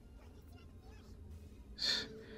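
Faint room tone, then near the end a short, sharp intake of breath.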